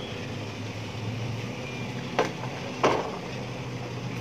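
Two short knocks as a cake tin is set down on a steamer pot's metal tray, over a steady low hum.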